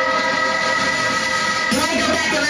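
Happy hardcore breakdown: a sustained chord held steady with the beat dropped out, then the drums come back in near the end.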